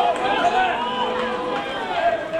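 Several voices shouting and calling out at once across an outdoor football pitch, as players and spectators call during play.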